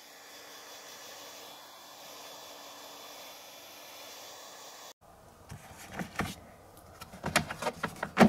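Hair dryer blowing steadily for about five seconds, then cutting off abruptly. After that come a series of clicks and knocks as a plastic pet carrier's grille door is handled.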